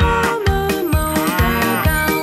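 A cartoon cow mooing twice, a short moo at the start and a longer one about a second in, over upbeat children's song music with a steady beat.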